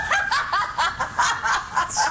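A person laughing in a quick run of short, high-pitched pulses, about four or five a second.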